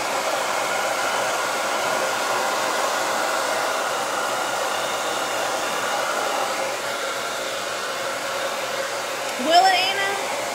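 Handheld blow dryer running steadily on hair, with a steady whooshing hum that drops slightly in level about two-thirds of the way in. Near the end a brief rising voice-like sound rises over it.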